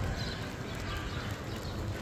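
Footsteps on stone paving, a series of light taps, over a low rumble of wind on the microphone.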